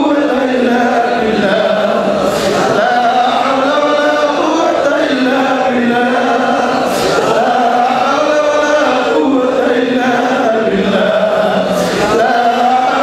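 A man's voice chanting melodically into microphones, holding long drawn-out phrases with a short break about every four to five seconds.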